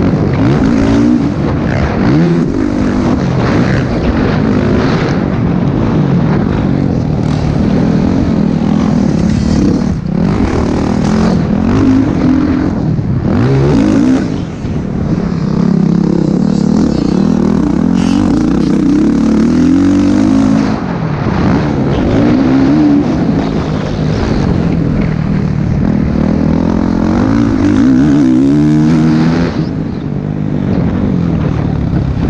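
Motocross bike engine heard from the bike itself, revving up and down repeatedly as the rider works the throttle and gears around the track, with a couple of brief drops where the throttle is closed.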